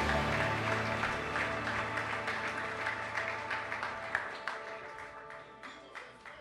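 The last chords of a worship song ring out and fade away over about four seconds while the congregation applauds, the clapping thinning out toward the end.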